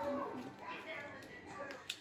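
Faint talking, with one short click just before the end.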